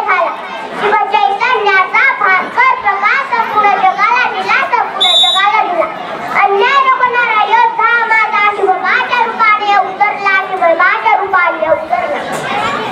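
A young girl giving a speech in Marathi into a microphone, her high child's voice rising and falling in an emphatic, declaiming delivery. A brief high-pitched tone sounds about five seconds in.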